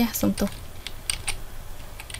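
Computer keyboard typing: a handful of separate, irregular keystroke clicks.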